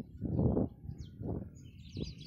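Birds chirping here and there, with two swells of low rushing noise, the louder about half a second in.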